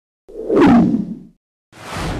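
Whoosh sound effects added in the edit. A falling swoosh starts about a third of a second in and lasts about a second. A second swoosh swells near the end, with dead silence between the two.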